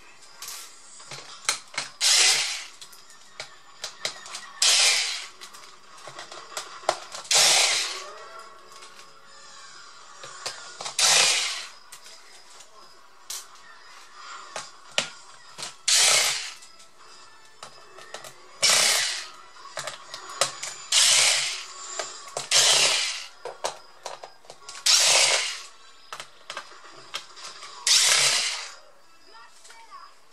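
Cordless electric screwdriver backing out the bottom-case screws of a Lenovo G570 laptop, running in about ten short bursts of under a second each, a few seconds apart. Small clicks of screws and handling come between the bursts.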